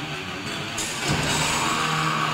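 Live heavy metal band playing between spoken lines: electric guitar holding low notes, with a bright hissing wash coming in just under a second in.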